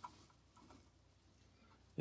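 Near silence, broken by a faint click just as the Bosc monitor's jaws close on the dead tarantula, then a few fainter ticks.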